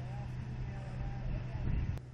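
Steady low hum of an idling engine, with faint distant voices over it.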